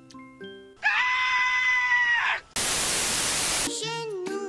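A soft chiming melody gives way to a loud, high-pitched scream held for about a second and a half that drops in pitch as it ends. Then comes a loud burst of static about a second long, and music with singing starts near the end.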